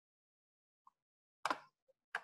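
A single sharp click of a computer key being pressed, the Escape key cancelling the selection, with faint ticks just before and after it.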